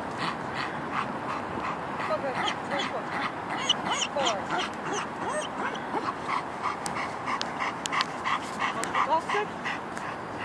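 German Shepherd dog whining and yipping over and over, about two to three short sounds a second, with a rising and falling pitch.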